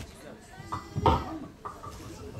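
Indistinct voices talking, with a louder, higher voice breaking out about a second in.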